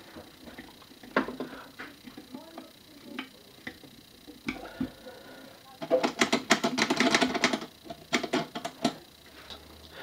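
Screwdriver turning screws into the metal frame of a one-arm bandit slot machine mechanism: scattered light metallic clicks, then about three seconds of rapid clicking and rattling starting about six seconds in.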